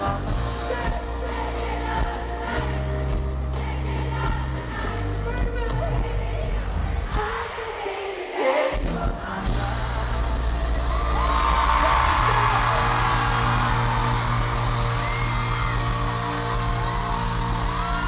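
Live pop band playing with sustained bass notes and acoustic guitar; the bass drops out briefly about eight seconds in. From about ten seconds in an arena crowd screams and cheers over the held closing music.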